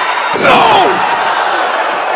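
Pro wrestling ring impact: a body slams onto the mat about a third of a second in, over steady arena crowd noise. A loud shout rises and falls right after the impact.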